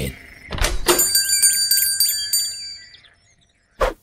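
Cartoon sound effects: a thunk a little after half a second in, then a high ringing shimmer that fades out by about three seconds, and a short knock just before the end.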